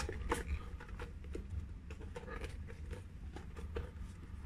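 Hands working a rubber inner tube into a pneumatic tyre: irregular short rubbing, scuffing and squeaking of rubber on rubber, over a faint low hum.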